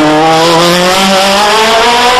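Open-cockpit sports-prototype race car accelerating hard out of a bend, its engine note rising steadily in pitch under full throttle.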